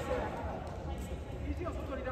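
Indistinct voices of people in a large sports hall, a few calls here and there, over a steady low hum.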